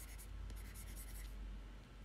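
Faint scratching of a stylus on a drawing tablet, a quick run of short strokes in the first second or so, over a low steady hum.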